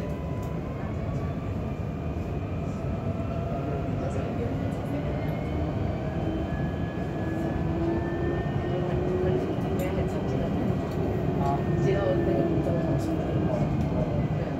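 Light rail tram running, heard from inside the car: a steady rumble with a faint electric whine that climbs in pitch as the tram gathers speed, then sinks as it slows toward the next stop.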